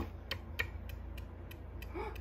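Homemade CD spinning top with a plastic bottle-cap spindle, set spinning on a wooden table with a sharp click as it is twisted off, then scattered light ticks and rattles as the disc spins.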